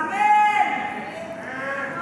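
A high-pitched voice held steady for about half a second, then fading away, followed by a fainter trace of voice.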